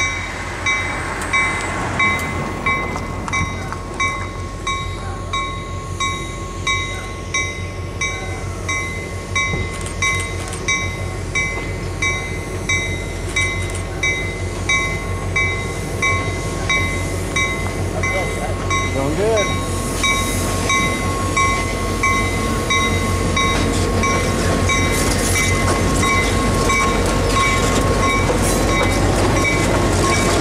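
Grade-crossing bell ringing in a steady rhythm, about one and a half strikes a second, as an EMD FP9A diesel locomotive hauling passenger cars approaches and passes close by; the locomotive's low engine rumble runs underneath, and engine and wheel noise grow louder over the last several seconds as it comes alongside.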